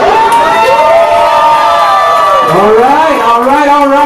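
Party crowd cheering with long drawn-out whoops from several voices at once, with some clapping, just after the dance music stops.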